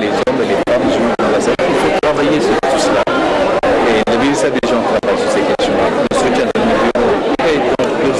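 A man speaking, with no break in his talk, the audio cut by very brief dropouts several times a second.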